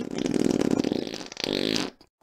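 A fart sound effect: a long, rapidly fluttering buzz that weakens after about a second and a half and then cuts off suddenly.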